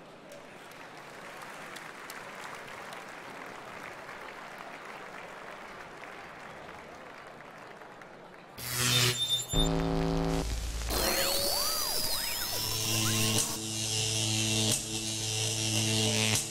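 Audience applause in a large hall, steady for the first eight seconds or so. Then show music starts suddenly: layered sustained electronic tones over a deep bass, with rising and falling sweeping sounds.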